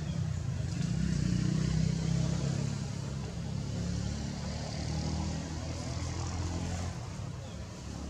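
Low engine hum, loudest about two seconds in and fading out near the end.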